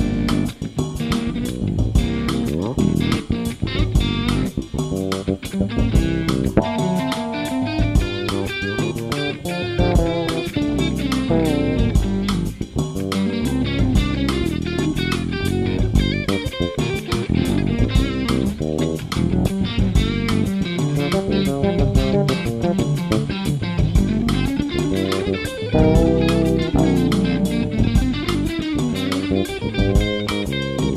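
Electric guitar and electric bass playing a groove together over a recorded Afro-Cuban 6/8 bembé drum track, with a steady percussive beat throughout. The guitar plays melodic lines with some held notes.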